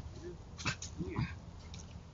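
A dog giving two short, whiny vocalisations, one about a quarter second in and one about a second in, with a sharp click between them.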